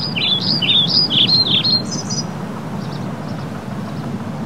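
A small bird chirping a quick run of short, high notes, each rising then falling, about four or five a second for roughly two seconds, over a steady background rush of outdoor noise.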